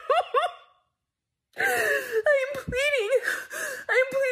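A woman sobbing: quick gasping catches of breath that break off into dead silence just under a second in, then she goes on with long, wavering wailing cries that rise and fall in pitch.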